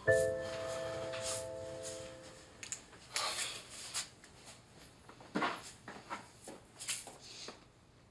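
A soft piano chord is struck and fades out over the first two seconds or so, closing the background music. After it come faint, scattered rustling and handling noises.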